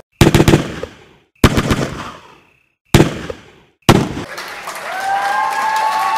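Four sudden loud bursts of rapid cracking, each dying away within about a second, like gunfire or firecrackers. From about four seconds in, a crowd cheers and applauds.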